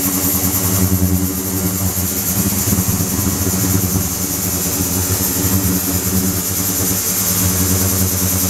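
Ultrasonic cleaning tank running with its water circulating: a steady, loud buzzing hum with a high hiss over it.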